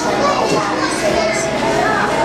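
Background chatter of many people, children's voices among them, overlapping with no single clear speaker.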